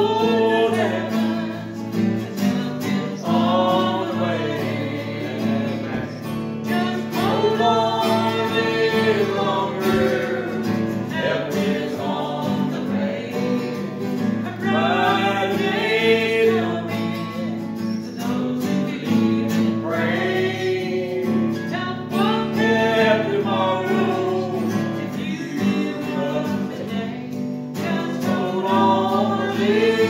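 A man and a woman singing a gospel hymn together, with guitar accompaniment.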